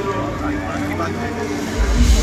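Voices talking over deep bass from concert music, the bass getting louder near the end.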